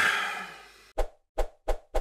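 A loud burst of noise that dies away over about a second, then about a second in, drum hits begin, each a sharp knock with a low thump, four of them coming closer together: the start of an intro jingle's drum build-up.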